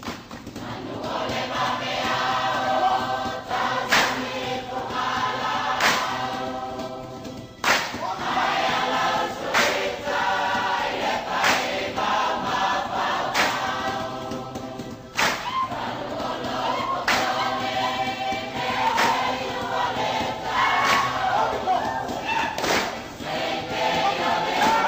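A group of voices singing a Samoan dance song together, with a sharp percussive strike marking the beat about every two seconds.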